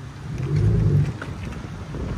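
2021 Ford F-150's 3.5 L twin-turbo EcoBoost V6 exhaust, fitted with an X-pipe and straight-piped true duals, as the truck pulls away at low speed: a deep, low note that swells about half a second in and eases off after about a second.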